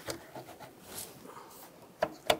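Faint handling noises from a rubber air intake tube being worked onto the throttle body: soft rubbing with a couple of light clicks, near the start and about a second in.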